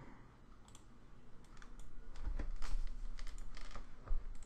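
Irregular run of small clicks from a computer mouse and keyboard being worked at a desk, sparse at first and coming thicker through the second half.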